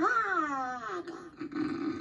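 Donald Duck's cartoon voice snoring in his sleep: one long voiced sound falling in pitch, then a steady low buzzing snore near the end.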